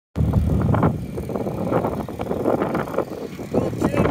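Can-Am side-by-side off-road vehicle engines running, a low rumble that is loudest in the first second and then carries on steadily.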